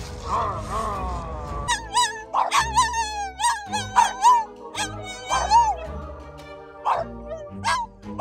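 Two French bulldogs howling in a string of short, wavering cries, heads raised, over background music with low held notes. The first second and a half holds a few sliding, falling cries before the howling starts.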